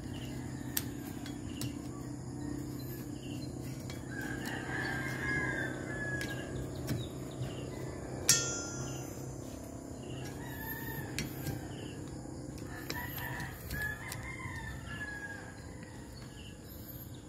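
A rooster crowing twice, about four seconds in and again near the end, over a low steady hum. About halfway through comes a single sharp click with a brief ring.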